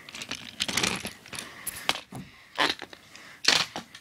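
Handling noise: a run of light clicks and rustles, with sharper clicks about two seconds in and again near three and a half seconds.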